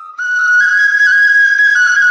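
A small folk wind instrument, held cupped in both hands at the mouth, playing a melody of clear, whistle-like notes that step up and down in pitch. It starts about a quarter of a second in.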